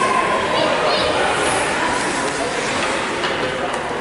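A steady murmur of many voices in an ice rink, as spectators and players talk during a stoppage in play.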